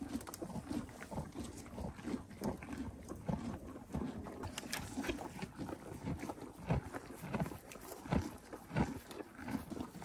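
Horses eating hay close up: irregular crunching and tearing, several times a second, as they pull the hay off the ground and chew it.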